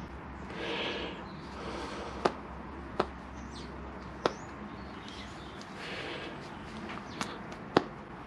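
Quiet handling noise of fingers working a greased rubber seal over the lip of a small metal clutch master cylinder piston, with a few sharp little clicks: one about two seconds in, one at three, one just past four, and two near the end.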